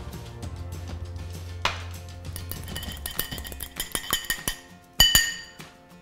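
A metal fork clinking against a small glass bowl while it stirs salted egg yolks: a run of quick light clicks, then one sharp ringing clink of glass near the end.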